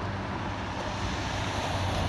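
Road traffic on the street beside the bridge: a steady rushing of a passing car's tyres over a low engine hum, growing slightly louder toward the end.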